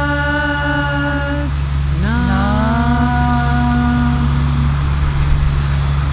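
A mantra chanted by women's voices in long held notes: one note held until about a second and a half in, then a second, lower note that slides up into place and holds for about two and a half seconds before stopping. A steady low rumble of distant traffic runs underneath.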